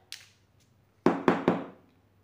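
Three quick sharp knocks of a plastic marker pen being handled and set against the table, close together in about half a second.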